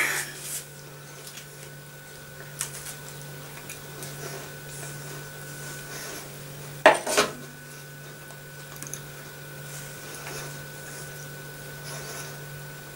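Light clinks and one brief double clatter about seven seconds in, like a plate or cutlery being handled, over a steady low electrical hum in a quiet kitchen.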